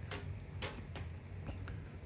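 A few faint, irregular clicks from a 2012 MacBook Pro laptop, over a low steady hum.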